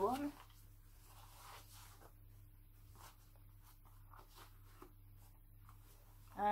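Faint rustling and soft scuffs of fabric being handled as a small cloth baby shoe is worked onto a doll's foot, with a low steady hum underneath.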